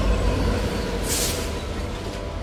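Amtrak diesel locomotive rumbling low as it moves alongside the platform, with a short hiss of air about a second in.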